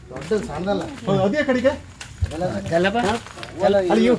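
Speech only: people talking in short bursts.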